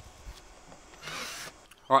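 A single short rasping scrape about a second in, lasting about half a second.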